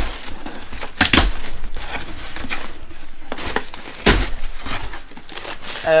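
Cardboard shipping box opened by hand: packing tape tearing and cardboard flaps rustling and scraping, with two sharp knocks, about one second and about four seconds in.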